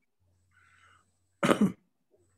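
A man clearing his throat once, a short, loud double burst about one and a half seconds in.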